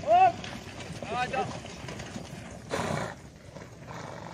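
Short, loud shouted calls from a voice, rising and falling in pitch: one right at the start and a pair about a second in, over steady outdoor background noise. A brief rush of noise follows near three seconds in.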